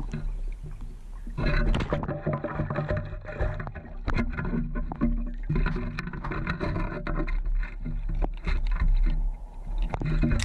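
Gravel, stones and debris rattling and water sloshing in a mesh-bottomed sand scoop as it is shaken and sifted by hand in shallow lake water, with many small clicks and knocks.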